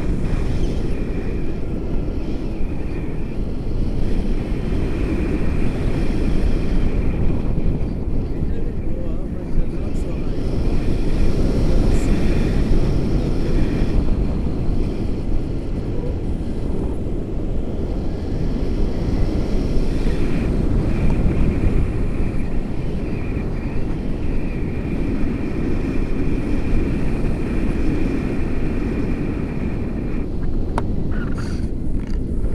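Wind buffeting the camera's microphone in paraglider flight: a loud, steady rush with most of its weight low down, and a faint thin high tone that comes and goes.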